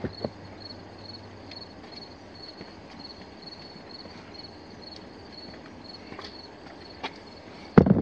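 Crickets chirping faintly in a steady, even pulse, about three chirps a second, with a few scattered light clicks and knocks of handling.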